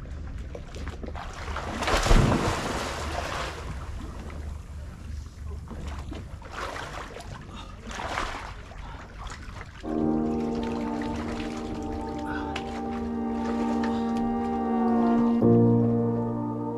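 A splash of a person going into lake water from a deck about two seconds in, followed by more water splashing. From about ten seconds in, ambient music with sustained chord tones takes over, changing chord near the end.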